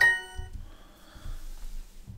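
Duolingo's correct-answer chime: a short electronic ding signalling a right answer, ringing out and fading within about half a second.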